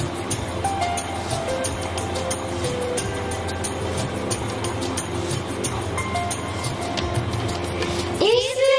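Casio electronic keyboard playing a slow melody of single held notes, one after another.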